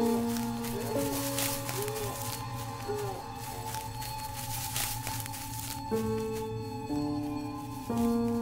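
Film score: sustained low synth-like chords that shift every second or so over a steady high drone, with a few short swooping notes early on.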